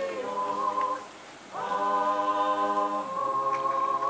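A cappella choir singing slow, long-held notes in harmony; the voices stop for about half a second a second in, then come back in together on one long sustained chord.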